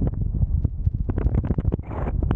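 Wind buffeting a microphone in paraglider flight: a continuous low rumble broken by many rapid crackles.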